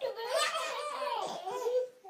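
A baby laughing hard: one long, unbroken run of laughter that breaks off near the end.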